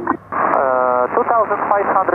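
A pilot's voice over the aircraft radio and intercom, narrow and telephone-like, making an altitude report to air traffic control. It includes a long held 'uh' in the first second.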